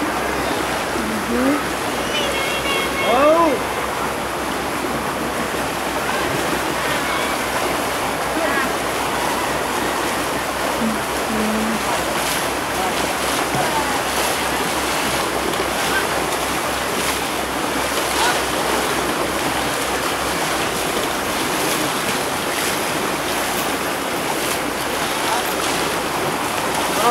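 Continuous splashing and churning of pond water around an elephant being bathed, a steady wash of water noise. Brief voices come through near the start.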